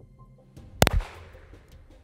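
A single pistol shot a little under a second in, with a short ringing tail: the last shot of a string fired at a paper target.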